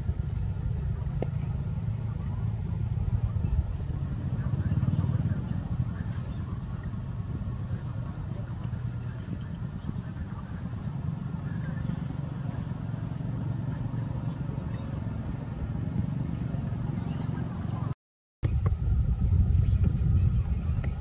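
Steady low outdoor rumble, with no clear single source, which drops out for a moment near the end.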